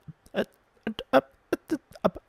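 A man's voice muttering 'a ver' ('let's see') over and over in short, clipped bursts, several a second.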